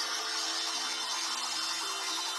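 Sci-fi energy sound effect from a TV soundtrack: a steady bright hiss with sustained low electronic tones that shift in pitch, as a throwing star energizes inside the glowing prism. Heard through a TV speaker.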